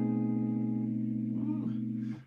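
Clean electric guitar chord ringing out on a Gibson Les Paul Standard: an A-flat triad over a B bass note, sustaining with a slight wavering and slowly fading, then damped just after the end.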